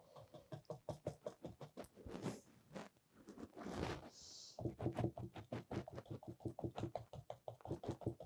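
A paintbrush dabbing paint onto a canvas in quick light taps. The taps are scattered at first and become a steady run of about seven a second from about halfway through.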